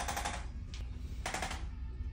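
Handheld corded percussive chiropractic adjusting instrument firing rapid taps against the neck, about a dozen a second, in two short bursts: one for the first half second and another a little past the middle.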